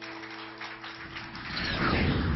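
The last sustained notes of an electric guitar with effects die away in the first second under a faint hiss. A louder rush of noise then builds in the last half second.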